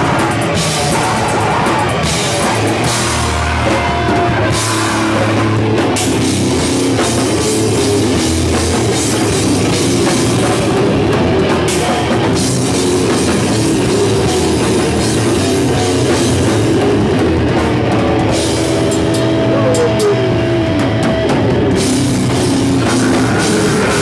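Grindcore band playing live and loud: drum kit with distorted guitars and bass in a dense, unbroken wall of sound. Near the end a held note sounds over it, and another note slides downward.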